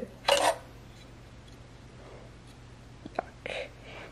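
Quiet handling noise as a printer's serial interface module is pulled out of its slot in the metal case: a short rasp early on, then a small sharp click a little after three seconds in, followed by a brief rustle.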